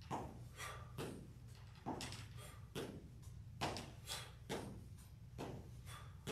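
Sneakered feet landing on a wooden floor while marching in place with high knees: a faint thud roughly every half second, slightly uneven, over a steady low hum.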